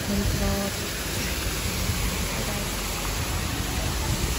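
Artificial rock waterfall: a sheet of water pouring off a ledge and splashing into a shallow pool, a steady rushing hiss.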